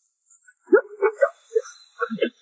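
A short pause, then a quick run of sharp, bark-like vocal shouts and grunts of effort from a fighter, starting about two-thirds of a second in, over a faint high hiss.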